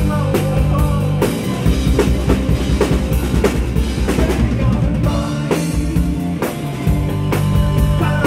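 Live rock band playing, with a drum kit keeping a steady beat over electric guitar and bass.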